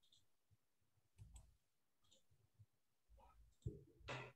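Near silence broken by a few faint, scattered clicks and one sharper click near the end: computer mouse clicks while an online form is being filled in.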